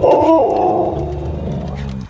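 Husky howling one long "woo": it starts high, drops in pitch after a moment and then trails off.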